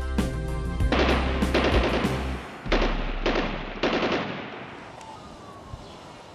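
Music fades under a run of about six gunshot sound effects, roughly half a second apart, each with a ringing tail; the last shot dies away over a couple of seconds.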